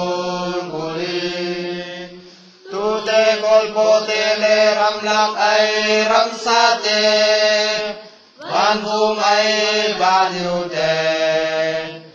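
A voice chanting the verses of a responsorial psalm, mostly on a held reciting note, in three phrases with short breaks for breath about two and a half and eight seconds in.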